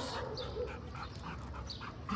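A chocolate Labrador retriever panting lightly in short, irregular breaths.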